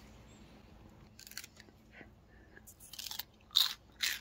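A fresh raw pea pod being bitten and chewed close to the microphone: a few irregular crisp crunches, the loudest near the end.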